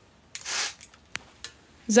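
Glass perfume bottle's pump atomizer spraying once, a hiss of mist lasting about half a second, followed by two small clicks.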